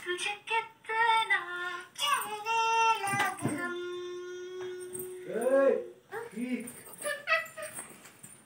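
A small child's and a woman's voices singing and talking in a sing-song way, with one note held steady for a couple of seconds about halfway through.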